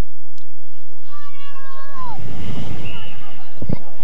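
A long, high-pitched shout from a distant voice on or around the hurling pitch, held and then falling away at the end, followed by a low rumble and a sharp knock near the end.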